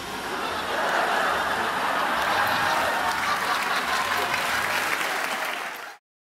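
Studio audience applauding steadily after a joke's punchline, cutting off suddenly near the end.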